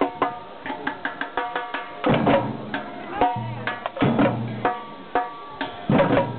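Children's percussion band playing: rapid stick strikes on small hand-held drums in a steady rhythm, with a larger bass drum sounding in short stretches.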